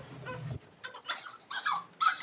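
Short, high-pitched squeals and giggles of laughter, the loudest near the end.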